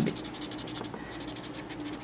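Faint, steady scratching of a white drawing stick rubbing over grey toned drawing paper as the artist works a charcoal shadow, a quick run of light strokes.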